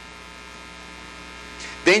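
Steady electrical mains hum with a stack of even overtones running under the recording. A man's voice comes in near the end.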